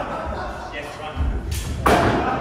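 Two sharp clashes of steel training swords in a fencing exchange, about a third of a second apart near the end, the second the louder.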